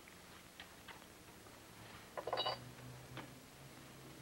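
A set of keys being picked up and handled, giving a few light metallic clicks and clinks, with the loudest cluster of clinks about halfway through.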